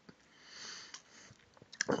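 A man sniffing: one soft breath drawn in through the nose, followed by a fainter breath and a couple of small mouth clicks before he speaks again near the end.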